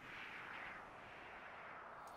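Faint, steady hiss of noise with no tone or rhythm. It fades in from silence, swells slightly about half a second in, then holds.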